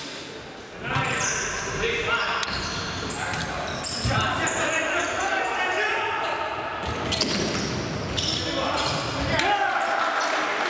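Futsal game sounds in a large echoing sports hall: players shouting and calling out, thuds of the ball being kicked, and short high squeaks of shoes on the court floor. The sharpest kick comes a little under four seconds in.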